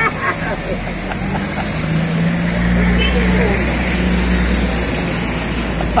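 A motor vehicle's engine running nearby on the street, a steady low rumble that grows louder about two and a half seconds in, with voices in the background.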